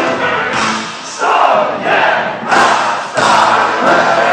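A live gypsy punk band breaks off briefly while the concert crowd shouts together in several loud bursts. The band comes back in about three seconds in.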